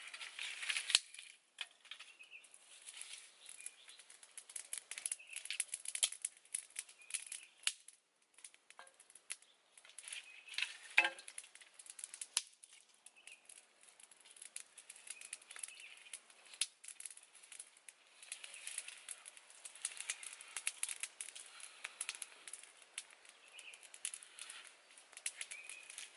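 Dry sticks being handled and snapped beside a small wood fire: irregular sharp cracks and clicks with rustling of dry twigs and leaves between them.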